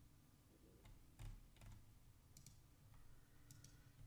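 Near silence: room tone with a handful of faint computer mouse clicks, the loudest a little over a second in.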